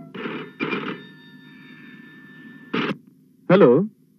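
Landline telephone bell ringing in a double-ring pattern: two short rings close together, then a pause. A third ring starts and is cut short as the call is answered.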